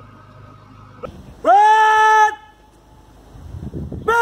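A man shouting a parade drill command to the marching contingent: a short first word, then one long, loud held call that rises in pitch and then stays level.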